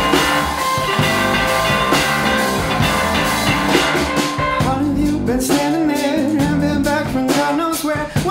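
Live rock band playing: electric guitar, keyboard and drum kit together. About halfway through the music turns busier, with a wavering melody line riding over the band.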